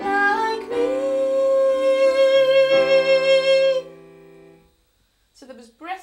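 A woman sings one long held note in head voice with light vibrato over sustained electric-keyboard chords. The note starts with breath added and ends in a pure head tone. The singing and chords stop a little before four seconds in, and the keyboard tone fades out.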